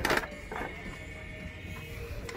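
Cordless circular saw being handled, not running: a short clatter right at the start, then a faint steady hum with a thin high whine.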